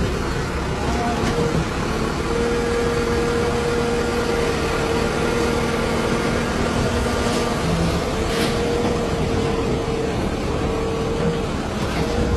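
Heavy machinery engine running with a steady droning hum, over a background of many voices and general commotion.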